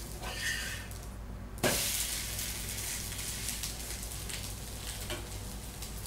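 Adai batter sizzling on a hot dosa tawa. About a second and a half in, the adai is flipped onto its uncooked side and the sizzle jumps up suddenly, then goes on steadily.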